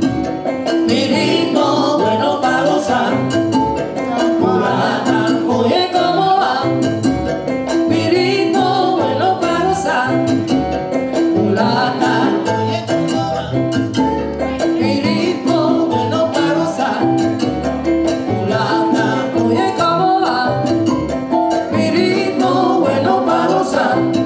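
Latin jazz band playing live, a continuous ensemble piece.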